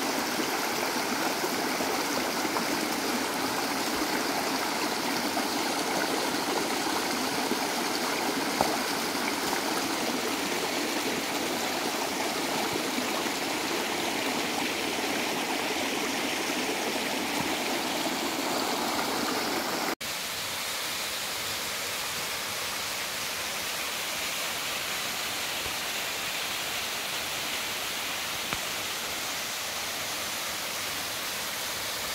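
Shallow stream running over stones and a low sandbag barrier: a steady rush of water. About two-thirds of the way through it drops out for an instant and comes back a little quieter and thinner.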